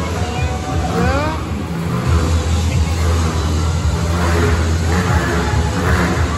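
Motorcycle engines revving with rising pitch, then running steadily with a strong low drone, over crowd chatter.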